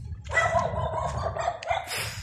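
One long, drawn-out animal call with a steady pitch, starting shortly after the start and lasting about a second and a half.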